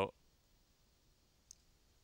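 A single faint, sharp click of a computer mouse button about one and a half seconds in, against near silence.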